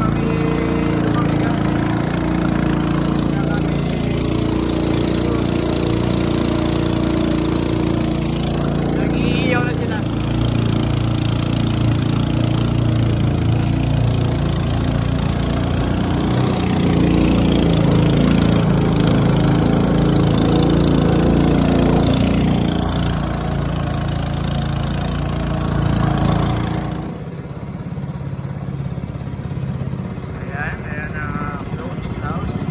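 Small boat engine on a wooden outrigger boat running steadily at speed. Near the end the engine note drops and gets quieter as the boat slows.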